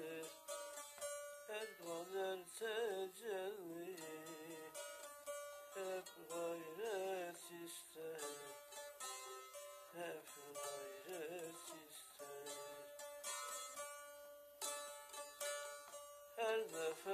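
Bağlama (saz) played with quick plucked and strummed notes, with a man's voice singing long, wavering ornamented lines over it in Turkish âşık folk style.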